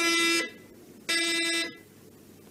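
Two short, steady buzzer tones, each about half a second long, with a pause between them.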